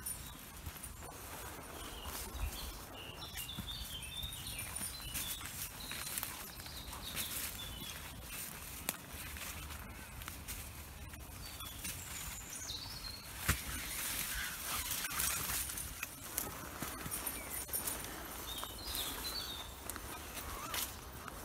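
Footsteps and rustling as a walker and a dog on a lead push along an overgrown woodland path. Short bursts of songbird song come a few seconds in, again around the middle, and near the end.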